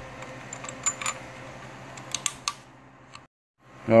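A few light metallic clicks and taps of coax cables and connectors being handled and hooked up, over a low steady hum. The sound drops out completely for a moment a little after three seconds in.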